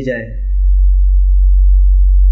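A loud, steady low electrical hum, mains hum around 50 Hz on the sound system. It carries on unchanged after a man's voice trails off in the first moment.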